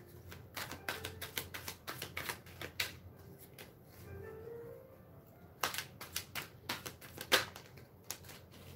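Tarot cards being shuffled by hand: a run of quick, sharp card clicks and taps. They thin out and grow quieter in the middle, then pick up again for a couple of seconds near the end.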